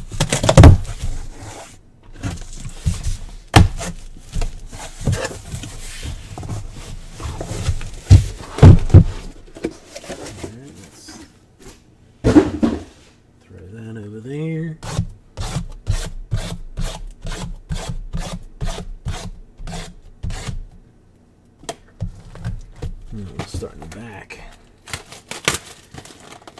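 Cardboard trading-card boxes being handled and opened by hand: rubbing, scraping and thunks, with a run of quick, evenly spaced taps or clicks, about three a second, past the middle.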